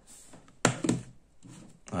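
Two sharp knocks about a second in as a plastic power strip holding a plugged-in gateway is handled and set down on a table, then quiet handling noise.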